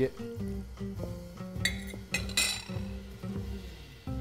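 A metal spoon stirring and clinking against a small glass bowl as 'nduja is worked into warm liquid, a few light clinks and a short scrape, over soft background music with held notes.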